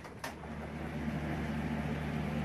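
Steady low hum of drilling rig machinery running, with a sharp click about a quarter second in.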